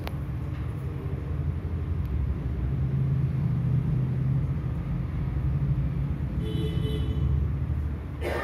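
A steady low rumble of background noise, with a single sharp click right at the start.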